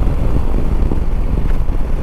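Shineray SHI175 single-cylinder motorcycle engine running steadily while riding, with wind rushing over the microphone.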